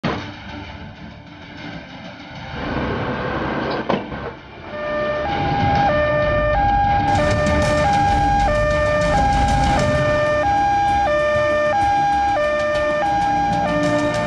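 Ambulance's two-tone hi-lo siren, switching between a higher and a lower pitch about every half second. It starts about five seconds in, after a low vehicle rumble and a sharp knock.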